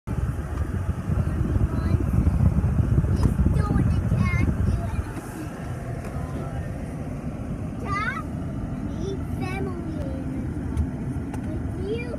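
Road and engine noise heard from inside a moving car, a low rumble that is loudest for the first five seconds and then eases. A few short voice-like sounds come through about four, eight and nine and a half seconds in.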